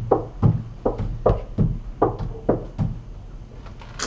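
Knuckles knocking on a wooden door: a run of about eight sharp knocks, roughly two to three a second, that stops about three seconds in.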